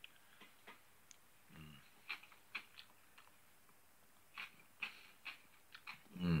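Faint mouth sounds of a person chewing a bite of Hungarian cucumber salad: scattered soft clicks and lip smacks, with a short closed-mouth hum about one and a half seconds in.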